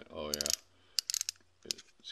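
Small plastic-and-metal clicks from an LED zoom flashlight's head being adjusted between flood and pinpoint beams: a quick run of clicks about a second in and one or two more near the end.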